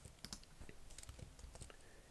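Faint, scattered clicks of computer keys being pressed as a block of text is copied and pasted in a text editor.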